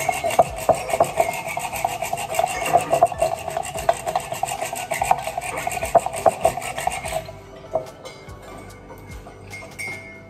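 Eggs being beaten briskly by hand in a cut-glass bowl, the utensil rubbing and ticking against the glass in rapid, regular strokes. The beating stops suddenly about seven seconds in, followed by a few light clicks.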